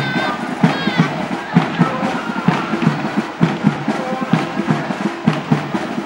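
Drums beating a steady marching rhythm, about two beats a second, with crowd voices underneath.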